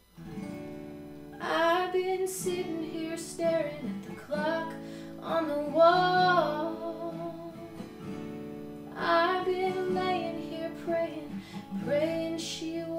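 A woman singing solo over her own acoustic guitar. The guitar comes in right at the start, and her voice enters about a second and a half later.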